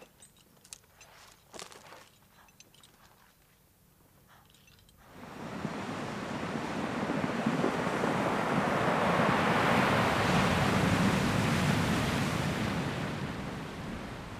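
Ocean surf: after a few faint seconds with small clicks, the rush of the sea swells up about five seconds in, builds for several seconds and then slowly fades.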